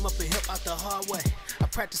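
Hip hop track: rapping over drum hits and a deep bass line, with the bass dropping out about a second in.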